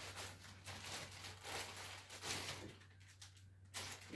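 Clear plastic packaging bag rustling and crinkling as it is handled, in a few soft swells that die down about three seconds in, over a steady low hum.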